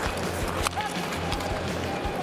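Ice hockey rink game audio during live play: a steady crowd murmur with scattered clicks of sticks and puck on the ice, over music with a low steady hum.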